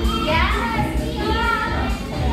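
Young children's voices calling and squealing, one rising in pitch shortly after the start, over background music.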